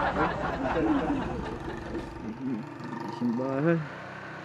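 A man's voice humming and laughing, with a motorcycle's engine and road noise underneath that drops away about two seconds in.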